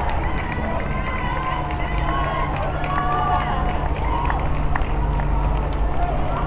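Footsteps of a pack of marathon runners on asphalt, with spectators' voices calling out and cheering in short shouts, over a steady low rumble.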